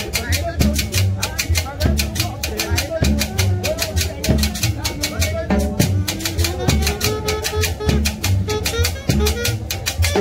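Live Latin dance band playing: drum kit and bass under a fast, steady shaker-like percussion rhythm, with melodic lines over the top.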